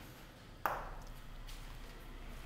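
A single sharp tap of chalk against a blackboard a little over half a second in, with a short ringing tail.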